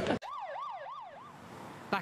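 A siren-like electronic warble, a tone sweeping rapidly up and down about four times a second, that starts abruptly and fades out after about a second.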